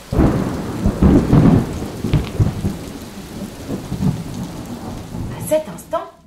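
Thunderstorm sound effect: a thunderclap that starts suddenly and rumbles, loudest in the first two seconds, over steady heavy rain that continues as the rumble fades.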